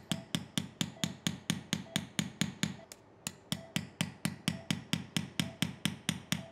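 A surgical mallet taps a curved osteotome in quick, light, metal-on-metal strikes, about five a second, with a brief pause about halfway through. The blade is cutting the dome-shaped osteotomy through the distal radius, working toward and perforating the dorsal cortex.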